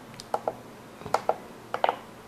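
Small plastic pushbuttons on an FPV monitor's front panel being pressed: about six short clicks in three close pairs, spread across the two seconds.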